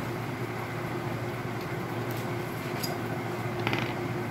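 Steady low hum of workshop background noise, with a few light clicks and a short scraping rattle near the end as metal and plastic fuser-unit parts are handled on a wooden bench.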